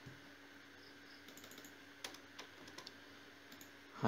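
A few faint computer keyboard key presses, the clearest about two seconds in, over a low steady hum.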